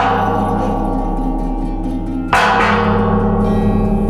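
Large metal pot sounded like a gong: two sudden metallic hits about two seconds apart, each ringing out in many overlapping tones that slowly fade, over a steady low hum.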